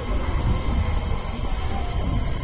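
Low, steady rumble of a subway train approaching through the tunnel, the Kita-Osaka Kyuko 9000 series heading into the station.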